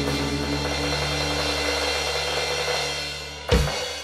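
Drum kit over the recorded song at the very end of a drum cover: the last chord and a cymbal wash ring on and fade, then one final crash-and-kick hit near the end.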